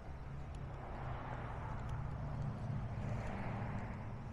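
A steady low mechanical hum, with a few faint footsteps on pavement.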